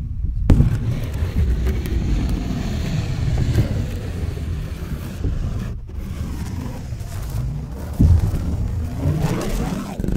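A sheet of plain white paper being handled, bent and flexed close to the microphone: a continuous rustling crinkle with sharper snaps about half a second in and again about eight seconds in.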